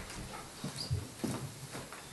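Faint, scattered soft knocks and brief rustles of people moving and handling paper in a quiet room, with no speech.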